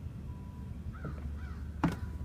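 Two short, faint bird calls, crow-like caws, about a second in over a steady low outdoor rumble. A sharp click near the end.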